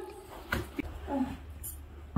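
A few faint, short cries of a small animal and a light knock, with a quiet spoken 'oh' about a second in.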